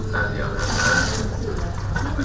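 A man speaking through a conference desk microphone over a steady low electrical hum.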